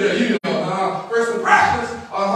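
A man's voice preaching in a strained, emphatic tone, with a split-second dropout in the audio about half a second in.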